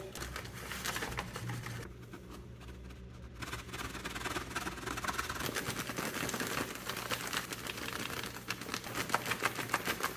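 Paper and a plastic zip-lock bag crinkling and rustling as sifted pyrotechnic primer powder is tipped off the paper into the bag. A dense, rapid crackle starts about three and a half seconds in.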